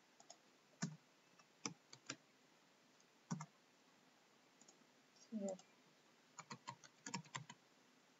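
Computer keyboard keystrokes: a few separate clicks in the first half, then a quick run of a dozen or so keystrokes as a word is typed near the end.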